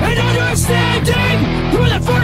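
Drumless mix of a pop-punk song: distorted electric guitars and bass playing an instrumental passage without vocals, with a pitched line sliding up and down over steady low chords.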